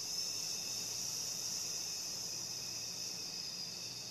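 A person breathing out one long, steady hissing "sss" through the teeth: the Taoist lung healing sound, held as a single slow exhale.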